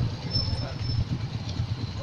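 Low, uneven rumble of a motorcycle under way: wind buffeting the camera microphone mixed with engine noise. A faint high whine sounds briefly about half a second in.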